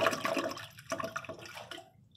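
American Standard Alta urinal flushing out, water gurgling and sputtering down the drain, loudest at the start and dying away near the end. The owner finds this urinal's flush weak, from low water pressure, often needing two flushes to siphon.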